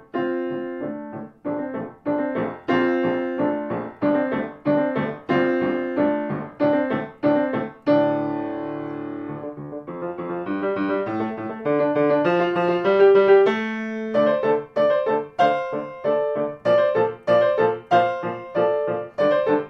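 Solo piano playing short, evenly repeated chords. About eight seconds in comes a held chord, then a climbing line of notes, before the repeated chords return.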